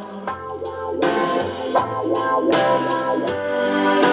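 Instrumental backing music of a slow ballad with no voice: held chords over a bass line, changing about every second.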